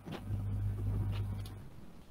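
Low steady hum over an open video-call microphone, lasting about a second and a half before fading.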